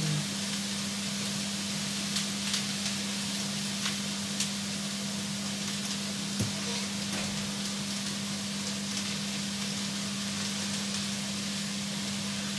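A pan of water heating on a gas burner, giving a steady hiss over a low, even hum, with a few faint clicks.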